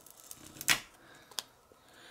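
Handling noise from a calculator circuit board being moved and set down on a work mat: a sharp click about 0.7 s in, then a smaller click about 0.7 s later.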